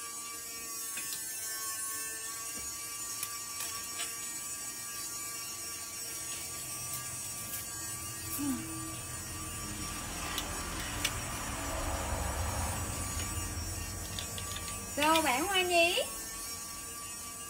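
A steady electrical hum with thin constant tones, and a low rumble that swells and fades in the second half. Near the end a short, louder burst of a voice.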